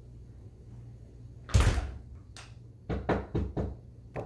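A loud thump against a glass-paned door about a second and a half in, then a quick run of knocks on the door, about five a second, starting near the end.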